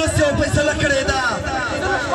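A man's voice singing a repetitive, chant-like song through loudspeakers, holding some notes, with regular low thumps underneath.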